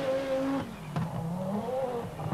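Group B rally car engine at high revs on a gravel stage. It holds steady, drops away about half a second in, then climbs again as the car accelerates.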